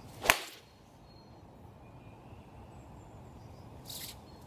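Golf club striking a ball off a driving-range mat: one sharp crack about a third of a second in. A fainter click comes near the end.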